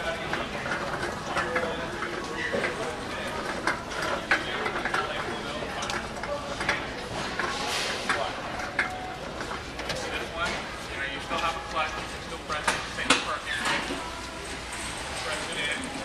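Indistinct talking over steady background noise, with many short clicks and knocks scattered through.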